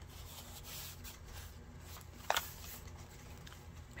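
Faint rustle of a handmade journal's paper pages being handled and turned, with one sharp click a little past halfway, over a low steady hum.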